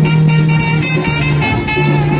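Big band playing live: the brass and saxophone section holds a loud sustained chord over the drum kit, with the low note dropping out about a second and a half in.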